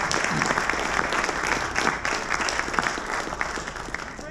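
Audience applauding: many hands clapping in a dense, steady patter that begins to die down at the end.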